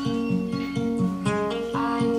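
Acoustic guitar playing, a run of plucked notes and chords that change every few tenths of a second.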